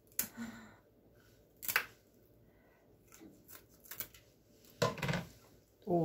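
Kitchen scissors snipping through the heads, fins and tails of small roach: several separate short cuts, the sharpest about a second and a half in.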